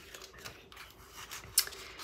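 Paper sticker sheets being handled and leafed through by hand: a faint rustle with a sharp paper tick about one and a half seconds in.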